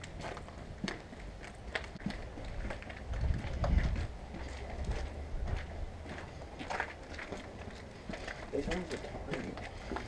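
Irregular footsteps on a debris-strewn concrete balcony walkway, with a brief low rumble about three to four seconds in.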